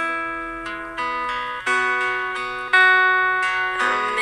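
Music: a slow instrumental passage of plucked guitar, with a new note or chord struck roughly once a second and left to ring and fade.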